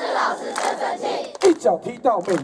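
A crowd of children shouting and cheering together, many voices at once, giving way near the end to a few single shouted voices.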